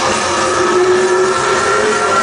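Live death metal band: loud, heavily distorted electric guitars holding sustained notes, one note bending slightly upward, with no clear drum hits.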